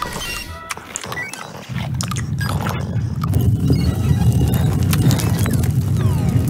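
A loud, dense low rumble packed with rapid knocks, building about two seconds in and holding steady, under music.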